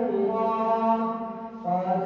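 A man's melodic Quran recitation (tajwid) during tarawih prayer, amplified through the mosque's microphone: long drawn-out notes that glide between pitches, broken by a short breath about one and a half seconds in before the chant resumes.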